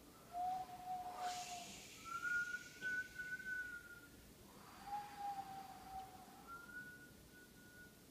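A person whistling four long, held notes that alternate low, high, low, high, each wavering slightly in pitch. A short breathy rush of air comes about a second in.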